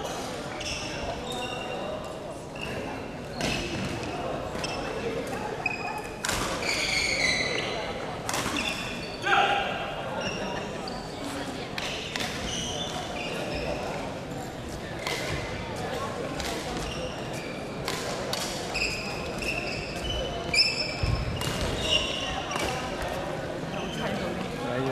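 Sound of a busy badminton hall during matches: sharp racket hits on the shuttlecock at irregular intervals, short high squeaks of shoes on the wooden court floor, and a steady background of voices.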